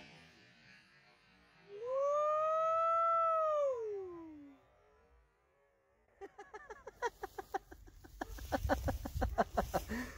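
A man's long vocal 'whoo' holler: the pitch rises, holds, then falls away over about two and a half seconds, a cheer right after a .270 rifle shot. About six seconds in comes a fast run of short clicking bursts that grows louder near the end.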